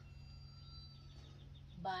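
Quiet indoor room tone: a low steady hum, with faint thin high tones held for over a second that fade out, then a single spoken word near the end.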